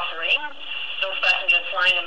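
Speech from a television news broadcast, heard through the TV set's speaker.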